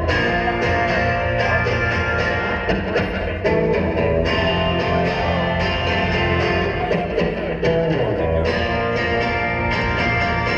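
Live rock band playing an instrumental passage: amplified electric guitar over a drum kit.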